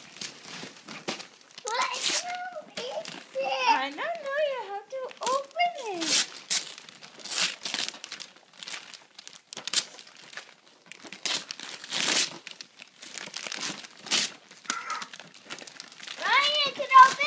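Gift wrapping paper being torn and crumpled as presents are unwrapped, a quick run of irregular rustles and rips that fills most of the second half. A child's high voice is heard over it in the first few seconds.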